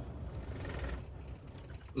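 A semi truck's diesel engine is switched off in gear for an air brake test. Its idle runs down and dies away about a second in.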